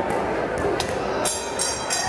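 Boxing crowd in a gym: a steady din of voices and shouting, with a few sharp knocks from the bout in the ring.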